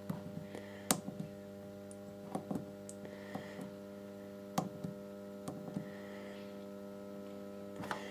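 A Solis grid-tie inverter humming steadily at mains frequency while it runs. A few light clicks come now and then from its front-panel buttons as the display pages are stepped through.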